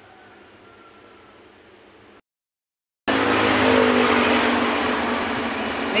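Faint room tone, then a short gap of silence. From about three seconds in, a motor vehicle's engine runs loudly close by, its pitch drifting slightly.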